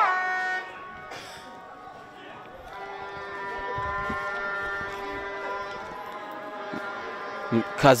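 Several sustained horn notes at different pitches sounding together from the stands, starting about three seconds in and held steadily, over faint stadium ambience.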